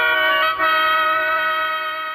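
Intro music for a radio programme: a sustained chord of held tones that shifts about half a second in, then starts to fade toward the end.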